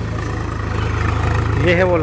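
Swaraj 735 FE tractor's three-cylinder diesel engine running steadily under load, a low even hum, as it drags a tined harrow through ploughed soil to break up the clods.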